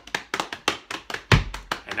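Hands patting fast on the thighs in body percussion imitating heavy rain, with one heavy, deep thump of a foot stamp for thunder about one and a half seconds in.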